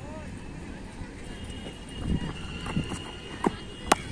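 A few soft footfalls on a dirt run-up, then a single sharp crack of a cricket bat striking a leather ball just before the end, over faint distant voices across the ground.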